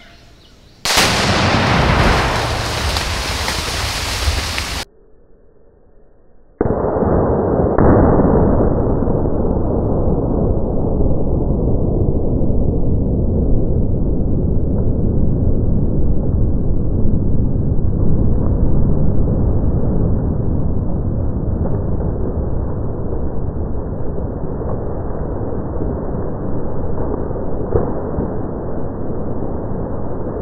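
Tannerite charge in a beaver dam detonating: a sudden, loud blast about a second in that lasts several seconds. After a short quiet gap comes a long, deep, muffled rumble that sounds like a slowed-down replay of the same explosion.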